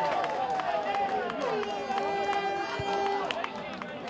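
Voices shouting and cheering in celebration of a goal, with one long held call in the middle and scattered sharp claps.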